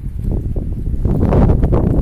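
Wind buffeting the microphone: a loud, rough, gusting rumble.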